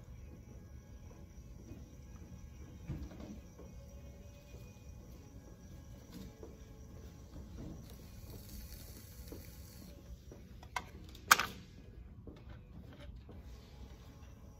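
Electric potter's wheel running with a low steady hum while a wooden knife tool cuts lightly into the clay at the base of a thrown piece. One sharp knock near the end.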